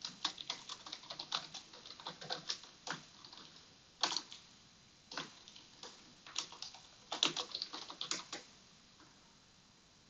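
Computer keyboard being typed on: irregular runs of keystroke clicks with short pauses between them, stopping about a second and a half before the end.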